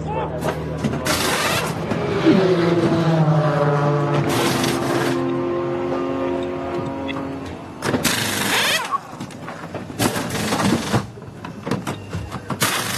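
Pneumatic wheel guns rattling in about five short bursts as the wheels come off and go on during a pit stop. Under them, a race car engine runs with its pitch falling as it passes.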